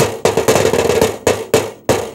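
A stick striking a hard surface in a beat: a short rattle, then a string of sharp knocks several a second, each ringing briefly.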